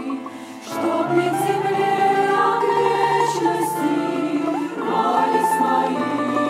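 Women's church choir singing a hymn, with sustained notes and a brief dip between phrases just under a second in before the singing swells again.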